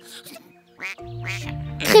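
A cartoon animal's voice quacking like a duck, one short call a little before a second in, then light background music starting.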